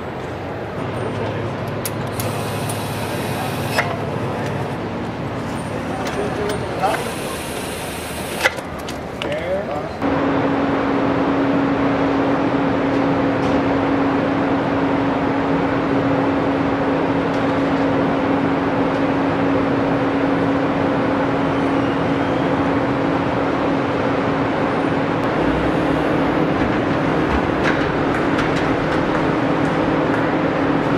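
Car assembly plant noise: a steady machinery hum with two short hisses and a few clicks. After about ten seconds it switches abruptly to a louder, steady drone with a constant hum.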